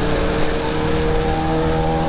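Sport motorcycle engine running at a steady cruising speed, heard from the rider's seat under a heavy rush of wind on the microphone.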